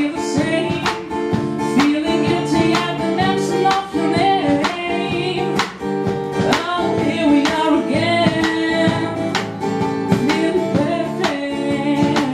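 A woman singing a song into a handheld microphone, accompanied by a strummed acoustic guitar.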